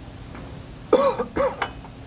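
A person coughs twice in quick succession, about a second in.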